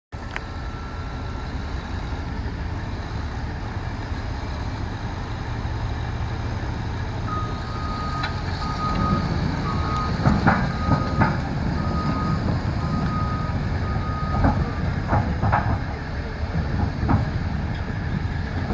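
Caterpillar crawler dozer's diesel engine running as the machine travels and turns, growing louder after about eight seconds, with sharp clanks from its steel tracks. Its backup alarm beeps steadily at one pitch, roughly once a second, through the middle of the clip.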